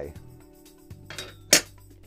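Metal battery-tray top frame set down onto the tray's metal side pillars, giving one sharp clink about one and a half seconds in, just after a faint scrape.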